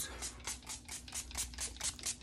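A fragrance mist spray bottle pumped rapidly, giving a quick, even series of short hissing spritzes, about five a second.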